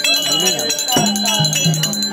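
Fast, steady metallic jingling of small bells, part of the percussion accompaniment of Tamil therukoothu street theatre. Voices run underneath, and a held low note comes in about a second in and changes pitch a couple of times.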